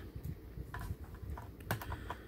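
Light plastic clicks and taps as an action figure's feet are pressed onto the foot pegs of a plastic toy tank, with a cluster of small clicks about a second in and a sharper click near the end.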